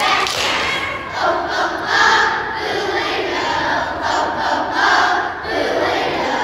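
A group of young children shouting together in unison, phrase after phrase, loud and strong.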